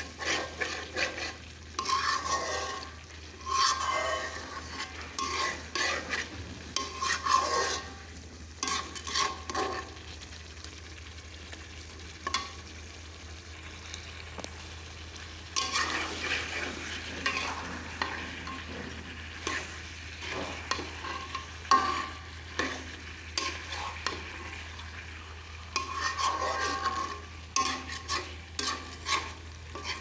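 Metal spatula stirring and scraping a thick beef and potato curry around a wide metal karai, in runs of scraping strokes, with the food frying underneath. The stirring eases off for a few seconds about a third of the way in, then picks up again, over a steady low hum.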